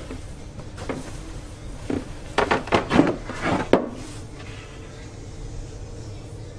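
Lid of a wooden storage compartment under a sofa seat being lifted open: a couple of single knocks, then a burst of clattering knocks in the middle.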